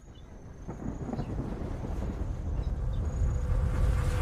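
A deep rumbling sound effect that starts faint and builds steadily louder, with no speech, as an animated logo intro opens.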